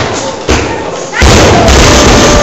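Loaded Olympic barbell with bumper plates dropped onto the wooden lifting platform: a sudden heavy thud about half a second in, then a louder impact a little past a second in that carries on loudly to the end.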